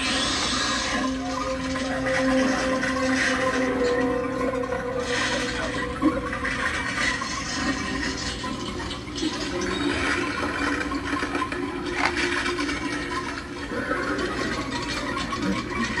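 Animatronic giant spider prop set off by a coin-slot activator, giving a long hissing, rushing sound with a low hum in the first few seconds.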